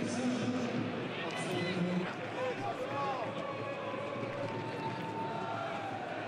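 Football stadium crowd noise: a steady din of many spectators' voices with a few faint individual calls rising out of it.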